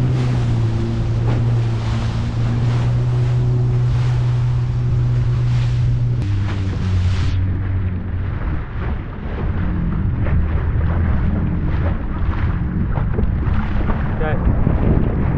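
Yamaha FX HO jet ski running at speed over choppy sea: a steady engine hum with wind on the microphone and water splashing against the hull. About six seconds in the engine note drops lower.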